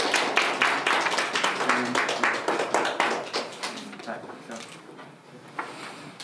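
A small group of people clapping. The applause thins out and dies away about four to five seconds in.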